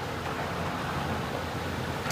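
Steady rush of fast-flowing floodwater in a swollen creek, an even noise with a low rumble underneath.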